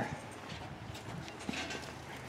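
A few faint footsteps on pavement, soft short knocks over a quiet background.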